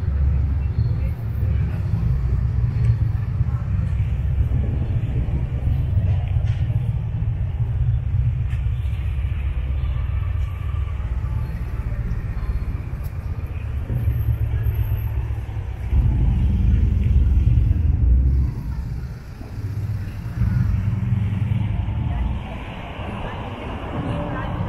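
City street ambience: a steady low rumble of road traffic with cars passing, and passers-by talking. The rumble swells louder for a couple of seconds about two-thirds of the way in, then drops back.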